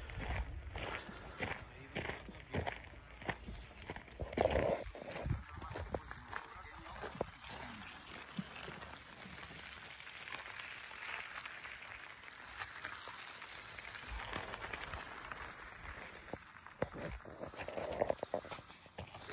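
Footsteps crunching on a gravel path, irregular for the first several seconds, then a faint steady outdoor background with only a few soft knocks.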